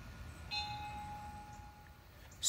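A dinner bell rung once about half a second in, one clear tone ringing out faintly and fading over about a second and a half.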